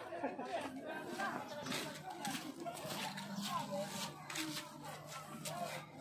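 Indistinct chatter of several people's voices in the background, without clear words.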